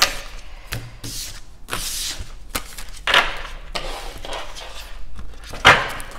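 A tarot deck being shuffled by hand: a run of short rustling swishes of cards sliding against each other, the sharpest about three seconds in and just before the end.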